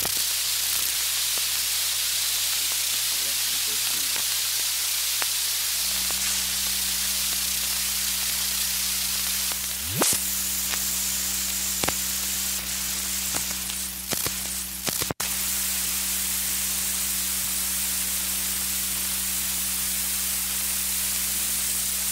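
Surface noise of an old aluminum-based lacquer disc recording in very poor condition: a steady hiss with a low hum. A further hum tone comes in about six seconds in, and a few clicks and a brief dropout come about halfway through.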